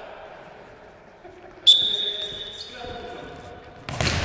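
A referee's whistle sounds about halfway through, one steady high blast lasting about two seconds, over voices echoing in a large sports hall. Just before the end comes the sharp thud of a ball being kicked on the hall floor.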